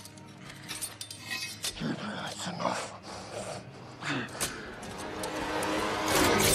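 Film fight-scene soundtrack: men grunting and straining as they wrestle, over a sustained music score, with a few sharp hits.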